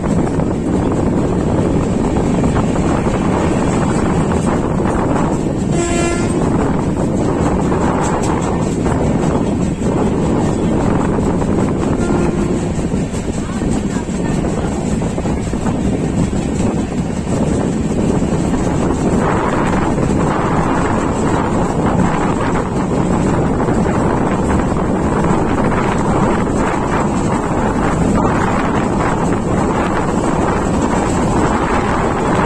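Express train's passenger coach running along the track: a steady rumble of wheels on rail mixed with wind rushing past the open window. A brief pitched tone sounds about six seconds in.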